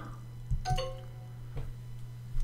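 A mouse click, then Duolingo's wrong-answer sound: a short cluster of tones stepping downward, marking the answer as incorrect. A fainter click follows, over a steady low hum.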